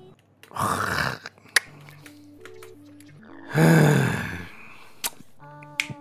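Quiet music with a few held low notes, broken by two breathy bursts of noise, the louder and longer one about three and a half seconds in.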